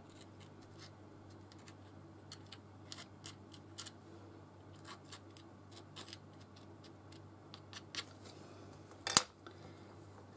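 Faint scratchy ticks from a metal-tipped pokey tool scraping and tapping against a paper card as it pushes snow paste along. About nine seconds in there is one sharp knock, as the tool is set down on the cutting mat.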